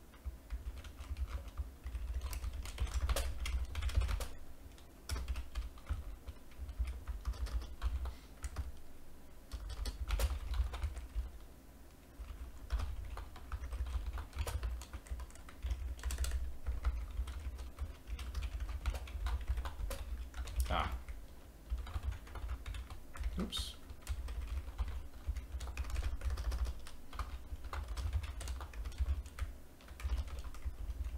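Typing on a computer keyboard: irregular runs of quick key clicks, with short pauses between bursts.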